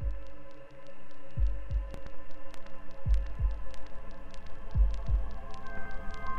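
Trailer sound design: a low heartbeat-like double thump, lub-dub, repeating about every 1.7 seconds over a steady held drone, with quick faint ticking clicks above it.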